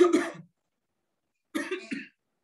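A man coughing: a double cough right at the start and another double cough about a second and a half in.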